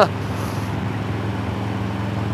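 Touring motorcycle engine running steadily at cruising speed with wind and road noise, a steady low hum echoing off the walls of the enclosed bridge deck.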